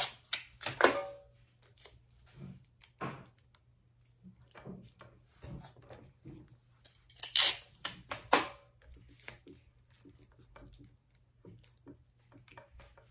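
Hands arranging items in a galvanized tin truck: scattered light clicks and knocks, with two louder rasping bursts about seven and eight seconds in, clear tape being pulled off its roll.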